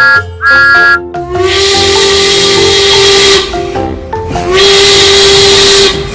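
Steam locomotive whistle sound effect: two short high toots, then two long whistle blasts, each with a loud hiss of steam.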